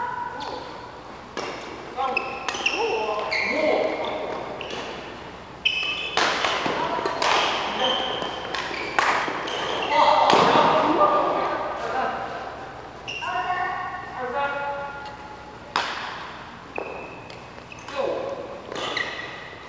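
Badminton play in a large hall: sharp racket strikes on the shuttlecock and footfalls on the court, repeated irregularly through a rally and ringing in the room, with players' voices between shots.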